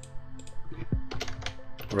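Typing on a computer keyboard: a run of quick keystroke clicks that come faster in the second half.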